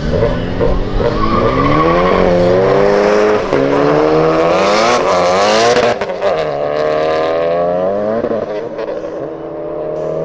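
Stage-3 turbocharged VW Jetta TSI accelerating hard from a standing start in a drag race. Its engine note climbs in pitch and snaps back down at each of about four quick upshifts.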